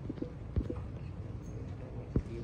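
A few sharp knocks, irregularly spaced, with the strongest about half a second in, over a low steady room murmur.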